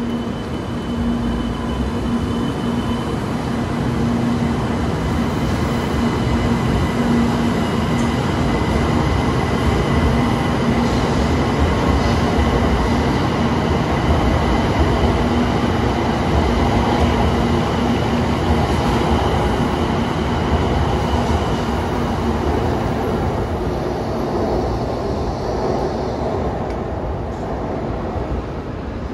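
A 700 series Rail Star Shinkansen train departing and accelerating along the platform. Its running noise builds to a peak midway, then eases off as the last cars pull away.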